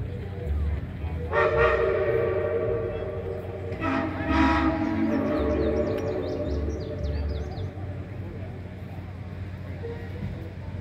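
Steam locomotive whistles: a long chime blast starting about a second in, then a second, deeper blast coming in just before it ends, around four seconds in, fading out by about six seconds.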